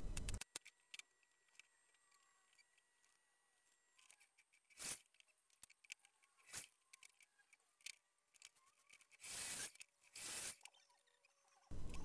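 Faint scattered knocks and clicks of pieces being handled at a workbench, with two short bursts of noise about nine and ten seconds in, otherwise near silence.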